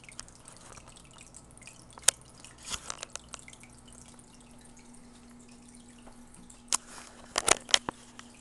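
Aquarium filter running, its water trickling and dripping back into the tank, with a low steady hum. Scattered sharp ticks, a few around two to three seconds in and a cluster near the end.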